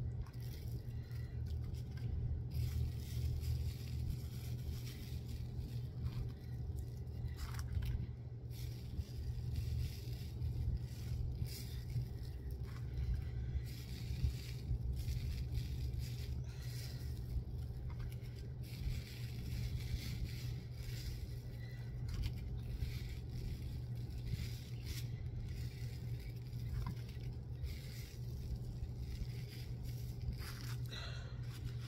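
Scattered small scrapes, clicks and rustles of hands pressing small seashells into a wet, gritty texture paste on a bottle and handling things on the work table, over a steady low hum.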